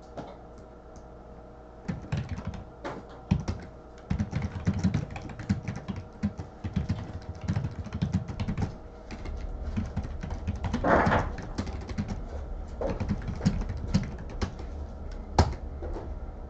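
Typing and clicking at a computer keyboard and mouse: irregular keystrokes and clicks, starting about two seconds in.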